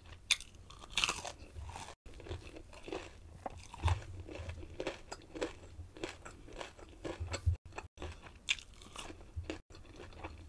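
Close-miked chewing and crunching of crispy breaded fried food, with irregular sharp crunches. The sound cuts out completely a few times for an instant.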